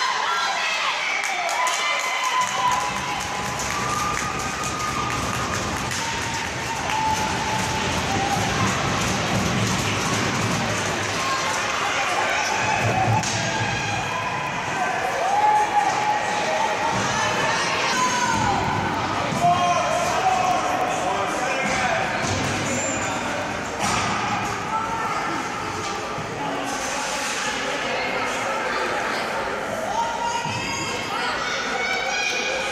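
Ice hockey rink during play: indistinct voices and calls from spectators and players, with scattered knocks and thuds of the puck, sticks and bodies against the boards.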